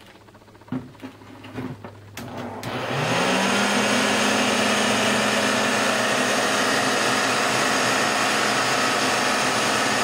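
A few handling knocks, then a hair dryer switched on about three seconds in: its motor whine rises briefly and settles, and it blows loudly and steadily into the cardboard-lidded waste-basket enclosure.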